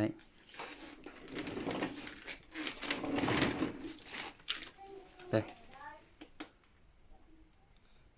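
Handling noise: irregular rustling and tapping as a hand moves over the water purifier's plastic back panel, then a single click about six seconds in.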